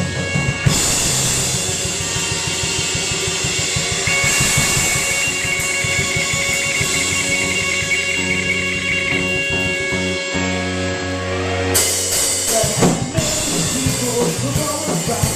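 Live garage rock band playing an instrumental passage on electric guitars, electric bass and drum kit. A held high note rings through the middle, and the cymbals grow brighter near the end.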